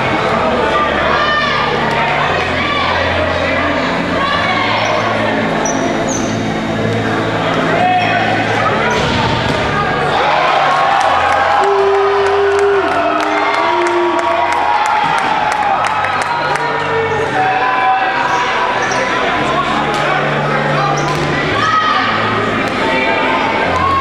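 Dodgeballs thudding on a hardwood gym floor as they are bounced and thrown, the knocks coming thicker through the second half, over a steady hubbub of voices in a large hall.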